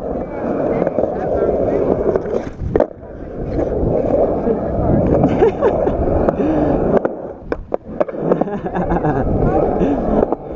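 Skateboard wheels rolling over rough concrete, a continuous gritty rumble, with sharp clacks of the board against the ground at about three seconds and again past seven seconds.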